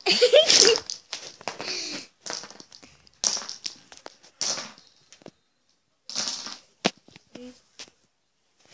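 A short laugh, then irregular bursts of rustling and handling noise as the phone is moved about, with a single sharp click near the end.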